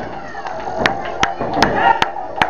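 Three sharp hand claps at a steady pace, about 0.4 s apart, starting a little under a second in, over murmuring crowd voices.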